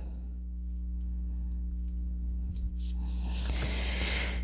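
Playing cards being handled: a few faint ticks, then a rustle of cards sliding out of a deck about three seconds in as a single oracle card is drawn, over a steady low hum.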